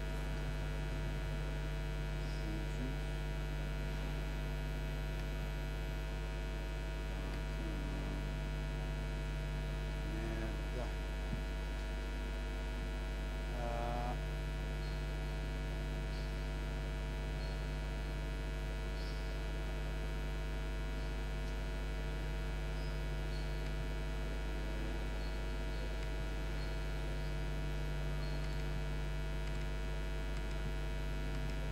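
Steady electrical mains hum with a buzz of many unchanging tones, with a few faint brief sounds around the middle.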